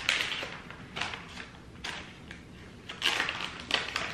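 Candy packaging being handled, giving a few short bursts of crinkling and rustling: one at the start, one about a second in, and a longer one near the end.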